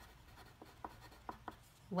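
Pencil writing on paper: a run of short, faint scratching strokes.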